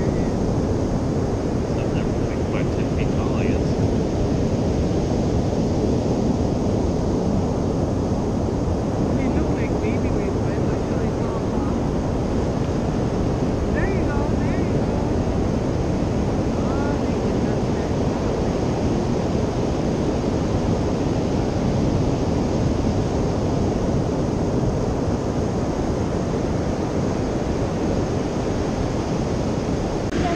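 Ocean surf breaking and washing up a sandy beach: a steady, unbroken rush of noise.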